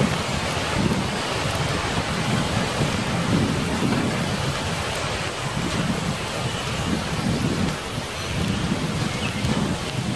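Steady rain with a low rumble that swells and fades every second or so.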